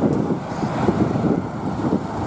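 A Lada police car's engine running close by: a steady, loud noise with no distinct rhythm or pitch changes.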